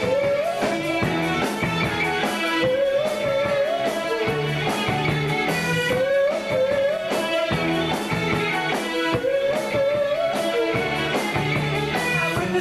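Live rock band playing a new wave song, with electric guitar prominent over a steady beat and a repeating melodic figure.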